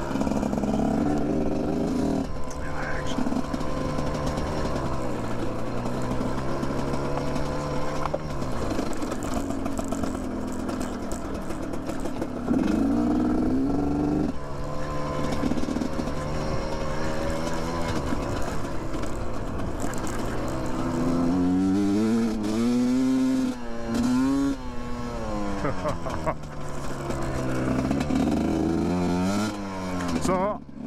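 GPX Moto TSE250R single-cylinder four-stroke dual-sport engine under way, its exhaust fitted with a FISCH spark arrestor insert. The revs rise and fall repeatedly as the bike is ridden over rough ground, with a few quick blips up and down about two-thirds of the way through.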